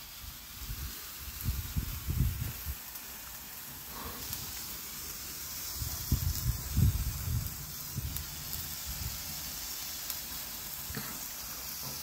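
Tako handheld gun-style gold waterfall firework fountain burning, a steady hiss of spraying sparks. Low rumbles rise under it about two seconds in and again around six to seven seconds.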